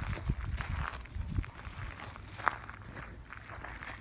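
Footsteps of a person and a dog shuffling on gravel, with a few short sharp clicks.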